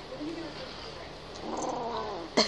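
Young kitten growling to guard its treats, a warning growl that swells about a second and a half in.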